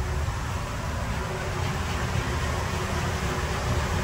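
Steady machine noise: a low rumble with an even hiss above it, unchanging throughout.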